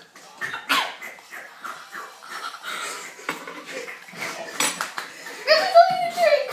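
Girls' voices: low muttering and giggling with scattered small clicks and knocks, then a louder drawn-out call that rises and falls in pitch near the end.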